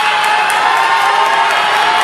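A large audience cheering and screaming without a break, many high-pitched voices overlapping.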